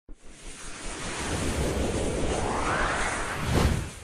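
Logo intro sound effect: a swelling rush of noise with a tone rising under it, then a quick swoosh shortly before the end.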